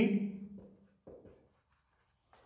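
Marker pen writing on a whiteboard: a couple of faint short strokes. A man's spoken word trails off at the start and is the loudest sound.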